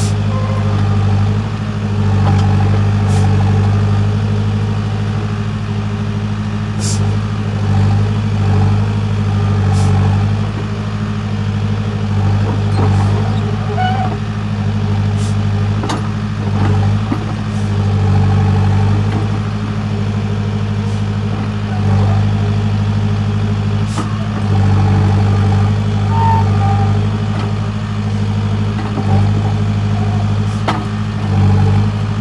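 Case backhoe loader's diesel engine running steadily while the backhoe digs, its drone rising and falling slightly with the load. A few short clicks or clanks break through now and then.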